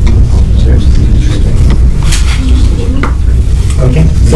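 Classroom room noise: a steady low rumble with scattered small clicks and paper rustles, and faint murmured voices.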